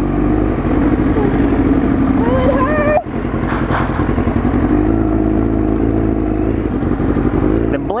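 Motorcycle engine running steadily while riding along, heard through a helmet camera with wind rush on the microphone; the engine is most likely the rider's 1999 Kawasaki ZX-9R Ninja inline-four. The engine sound dips briefly about three seconds in.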